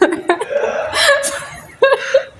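A woman laughing in short chuckles, mixed with a few spoken words.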